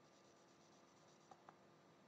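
Near silence: faint room tone with two small, faint clicks about one and a half seconds in.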